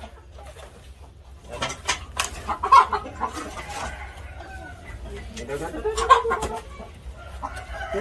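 Gamecocks clucking in their coop, with a few sharp knocks and rustles from sacking and netting being handled; the loudest knocks come about three and six seconds in.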